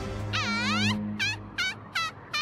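High-pitched bird-like calls from an anime soundtrack: one long swooping call, then a run of short calls about every 0.4 s. A low steady hum runs under the first second.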